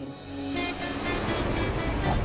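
Business jet's engine noise, a dense rush that swells about half a second in and holds, over a sustained note of trailer music.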